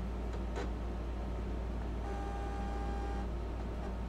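A few light clicks, then a Silhouette Cameo cutter's carriage motor whines at one steady pitch for about a second as it moves the tool head into position over a registration mark.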